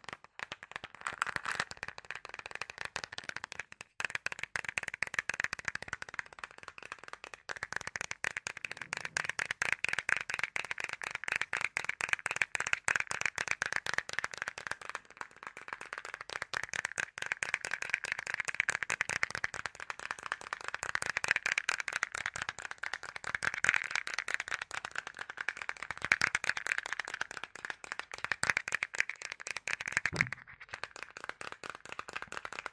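Rapid, dense crackling clicks close to the microphone, an ASMR trigger that goes on with a couple of brief breaks.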